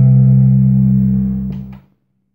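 The final chord of a country song's guitar accompaniment, held and ringing, then dying away to silence near the end.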